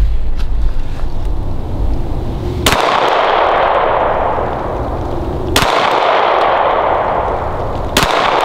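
Three single shots from a 9 mm Glock 19 pistol fitted with a red dot, fired slowly about three seconds apart as sighting-in shots, each crack followed by a long echo.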